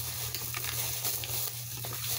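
Thin plastic shopping bag rustling and crinkling as an item is pulled out of it.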